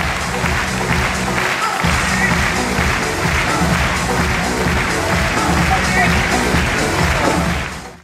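Upbeat show music playing through the arena over audience noise with some applause, fading out near the end.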